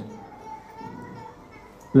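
Faint children's voices in the background of a room, with a man's voice coming back in at the microphone at the very end.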